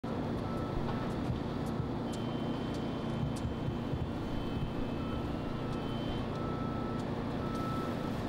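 Outdoor street ambience: a steady low rumble of road traffic or an idling vehicle under a constant hum, with faint short high beeps now and then.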